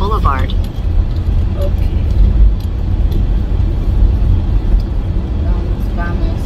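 Steady low rumble of a car's engine and tyres heard inside the cabin while driving.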